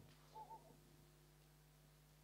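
Near silence: room tone with a steady low hum, and two faint short tonal sounds close together a little under half a second in.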